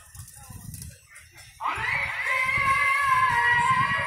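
A muezzin chanting the sela from the mosque's minaret loudspeakers, coming in suddenly about one and a half seconds in on a long, held, ornamented note. Before it there is only a low rumble of outdoor noise.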